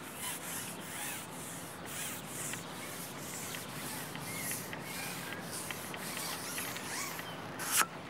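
Steady outdoor hiss with a few faint short chirps, and one sharp click shortly before the end.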